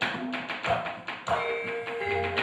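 A rapid series of sharp knocks from a wayang dalang's wooden cempala on the puppet chest and keprak plates, cueing the gamelan. The gamelan's ringing metal tones come in about halfway through.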